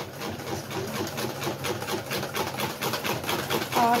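Wire whisk beating a besan-and-yogurt batter in a stainless steel bowl: a rapid, even clatter of the wires against the steel, several strokes a second.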